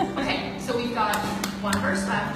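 A woman singing live to two acoustic guitars, with a low guitar note held under the voice and a few sharp strums or taps between about one and two seconds in.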